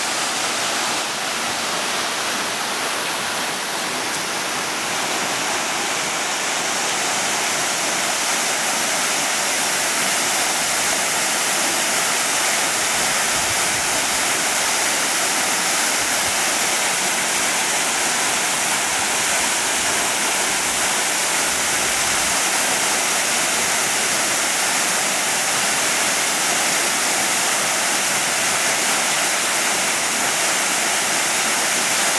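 Waterfall pouring from a cliff into a plunge pool: a steady rushing hiss of falling and splashing water, growing a little louder after the first several seconds.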